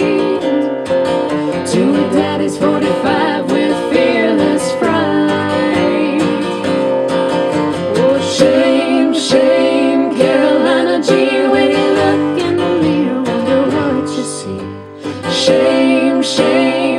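Live folk-duo music: an acoustic guitar strummed alongside a small plucked string instrument in a passage between sung verses, with singing at times. The playing eases off briefly near the end, then picks up again.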